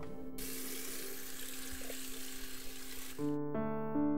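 A tap runs water for about three seconds over a soft held music tone, then stops suddenly as piano music comes in.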